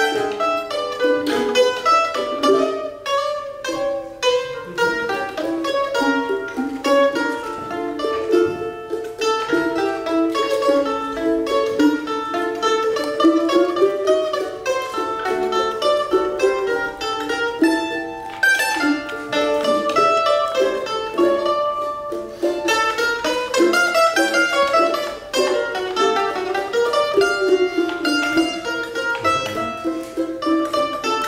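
Two mandolins playing a choro together: a quick, busy picked melody over plucked chords, running without a break.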